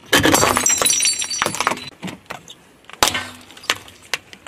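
Objects cracking and crunching as a car tyre rolls over and crushes them: a dense burst of crackling and snapping lasting nearly two seconds, a few scattered snaps, then another sharp crack about three seconds in.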